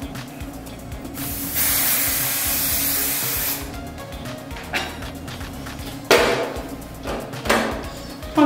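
Aerosol hairspray can sprayed in one long hiss of about two and a half seconds, then two short bursts near the end, over quiet background music.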